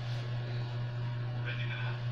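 A steady low electrical hum, like mains hum, running without change. A single short spoken word comes near the end.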